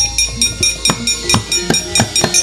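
Javanese gamelan accompaniment to a wayang kulit performance, with drum strokes about three times a second over held metallic tones and a deep low hum.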